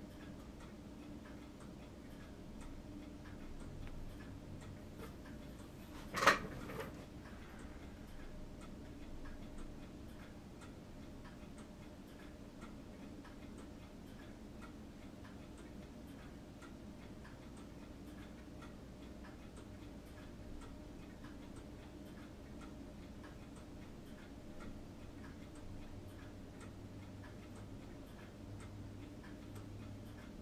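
Faint, steady, evenly spaced ticking, like a clock, over a low room hum, with one sharp knock about six seconds in.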